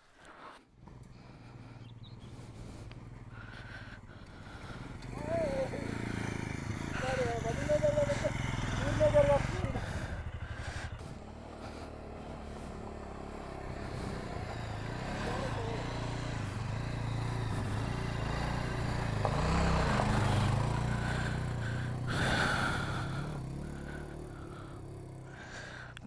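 Motorcycle engines running at low revs on a rough dirt trail, swelling as a bike climbs up and past about twenty seconds in.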